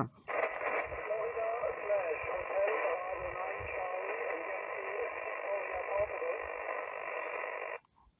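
An amateur radio transceiver's speaker playing a faint voice buried in static, thin and narrow-sounding, a station answering the call that is too weak to copy in full; it cuts off suddenly near the end.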